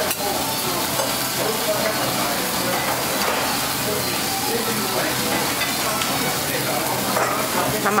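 Noodles, squid and cabbage sizzling on a hot flat iron griddle while two metal spatulas toss and scrape them: the fried-noodle layer of a Hiroshima-style okonomiyaki being cooked.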